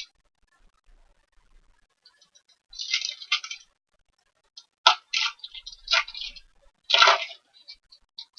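Cellophane-wrapped trading-card pack crinkling and cardboard box rustling as the pack is pulled out of its box and handled. The sound comes in several short crinkly bursts, the loudest about seven seconds in.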